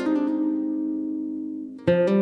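Acoustic guitar played fingerstyle: a plucked chord rings out and slowly fades, then a fresh run of plucked notes starts just before the end.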